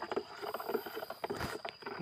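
Low rustling and light handling noise, as packets are handled over plastic mulch and the phone moves, with a single louder brush or knock about one and a half seconds in.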